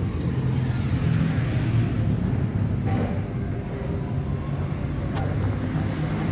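Steady low rumble of a running motor vehicle engine in street traffic, with a couple of faint clicks about three and five seconds in.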